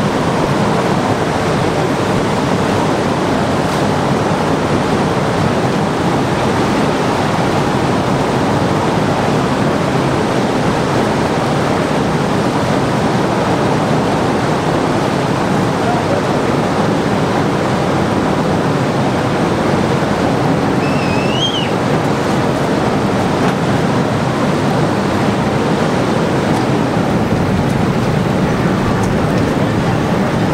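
Steady rushing noise of water churned up by the cruise ship Carnival Mardi Gras as it passes close alongside a pier, with a brief rising chirp about two-thirds of the way through.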